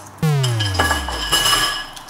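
A comedic sound effect: a sudden falling tone that slides down in pitch over about a second and a half, with bright metallic ringing tones layered over it.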